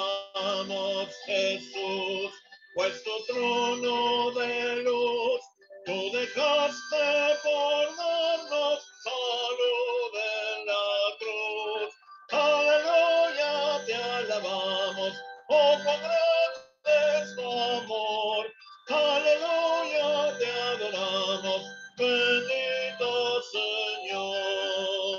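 A hymn sung with musical accompaniment, the melody carried in short phrases with brief breaks between them.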